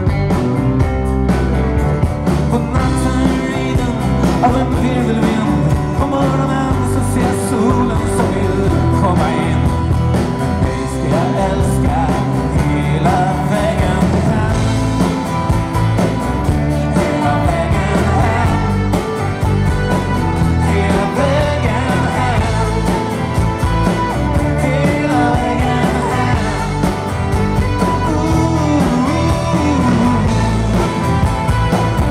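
A live rock band plays a song through a PA: a steady rhythmic low end of drums and bass under guitars, with a man singing the lead.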